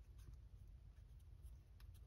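Near silence: room tone with a few faint ticks of small glued paper circles being pressed and handled between the fingers.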